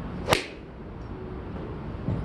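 Golf iron swung through and striking a ball off a driving-range mat: a quick swish ending in one sharp crack of impact about a third of a second in.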